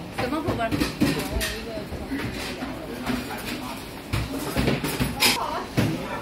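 Voices talking with background chatter and a few light knocks.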